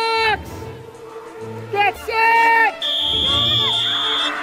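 Blasts of a handheld air horn: a short blast at the start, two quick toots just before two seconds in, then a half-second blast whose pitch sags as it dies. A loud steady shrill high tone follows for about a second and a half, with music underneath.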